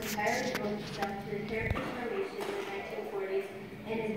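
Speech: a voice talking in the hall, with one short low thump about two seconds in.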